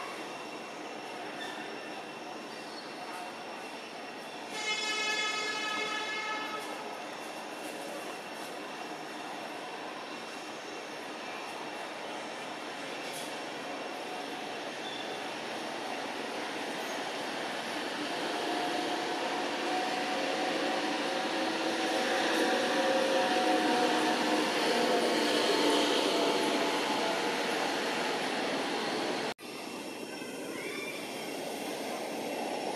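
Motor traffic passing by: a vehicle horn sounds one steady note for about two seconds, about five seconds in; later a vehicle engine grows steadily louder and passes, loudest about two-thirds of the way through, until the sound cuts off suddenly just before the end.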